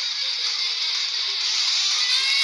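Streamed internet-radio music playing through an HTC Hero phone's small built-in loudspeaker. It sounds thin and tinny, with little bass, at a steady level.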